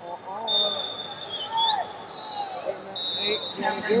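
Shouting voices of coaches and spectators carrying through a large arena hall during a wrestling bout, with a steady high tone twice, about half a second in and again near the end.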